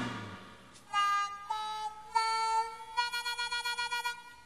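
A band's last chord rings out and dies away, then an unaccompanied blues harmonica plays held notes, with a fast warbling trill in the last second.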